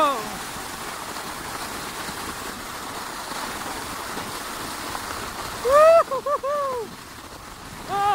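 Sled sliding fast down a snowy track, a steady hiss of the sled on snow throughout. A person whoops briefly at the start, and louder about six seconds in with a quick run of rising-and-falling "whoo" calls.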